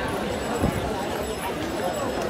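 Pigeons scrabbling and flapping in a wire cage as hands reach in among them, giving a few irregular knocks and taps, the loudest about a third of the way in, under people talking.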